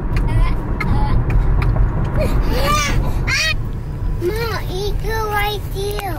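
Steady low road and engine rumble heard from inside a moving car, with a young child's high-pitched vocalising breaking in a few times, mostly in the second half.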